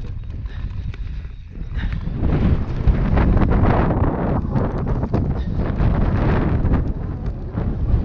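Wind buffeting a helmet-mounted GoPro's microphone at speed, over the rumble of mountain bike tyres on a dirt-and-grass trail, with quick rattling clicks from the bike. The noise gets louder about two seconds in and eases slightly near the end.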